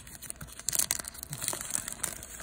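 Silver foil wrapper of a trading card pack crinkling in the hands as the cards are worked out of it, in irregular rustles with a louder burst a little under a second in.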